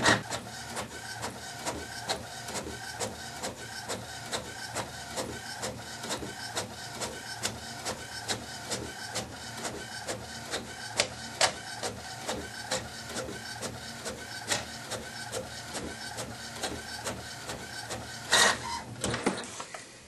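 Kodak ESP Office 6150 inkjet all-in-one printing a colour photo: the print-head carriage shuttles back and forth in a steady, quick, even rhythm. A louder burst of mechanism noise comes near the end as the finished page feeds out.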